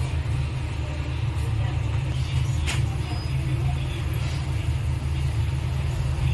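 Steady low background rumble, with one short sharp tick about halfway through.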